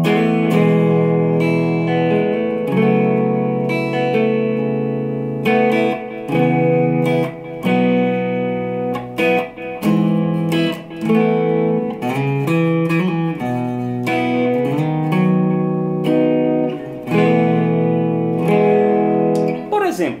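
Electric guitar playing a short improvised piece of held chords that change every second or two, with brief gaps between phrases. The chords come from the key of E major with added tensions such as an F-sharp minor eleventh.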